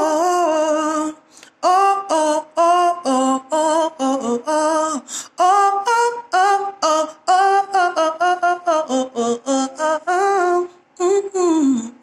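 A woman singing a rhythmic line of short, detached syllables, about three notes a second at changing pitches: drum-rudiment stroke patterns rendered with the voice as a melodic instrument. There is a short break about a second in, and a longer note that slides down in pitch near the end.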